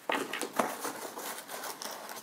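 Tissue paper crinkling and rustling in irregular crackles as hands dig through a packed gift box.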